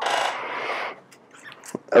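A brief scraping, rubbing noise lasting just under a second, about as loud as the lecturer's voice, followed by a couple of faint clicks.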